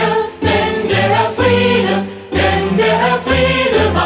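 Song from a German stage musical: a choir singing over instrumental accompaniment with a bass line, in short phrases about a second long.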